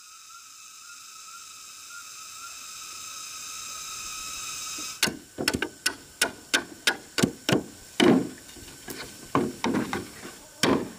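A blade chopping into a green bamboo pole in quick repeated strikes, about two to three a second, beginning about halfway through. Before the strikes there is only a steady high-pitched buzz that slowly grows louder.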